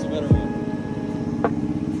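Small single-cylinder motorbike engine idling steadily, with music playing alongside.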